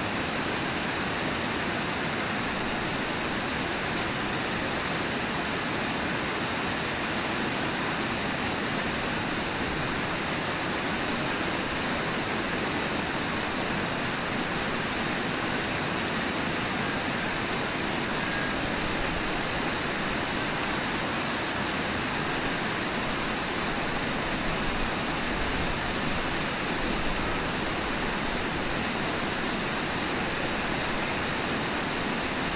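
Steady rushing of the Brooks River's fast water below Brooks Falls, an even, unbroken roar.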